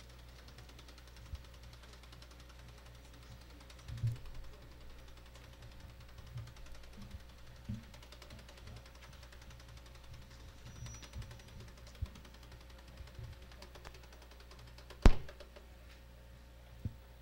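A quiet pause in a church hall sound system: faint steady hum and hiss with a few soft low thumps. One sharp, loud knock comes near the end, like a microphone being bumped.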